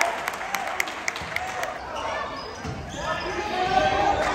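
Basketball play on a hardwood gym floor in a large echoing hall: a quick run of short sneaker squeaks and ball bounces over the first couple of seconds, then voices shouting from about three seconds in.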